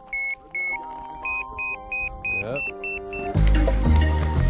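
Avalanche transceiver beeping: a run of about a dozen short, high electronic beeps that come faster and step up in pitch, over background music. About three and a half seconds in, a louder, bass-heavy passage of the music comes in.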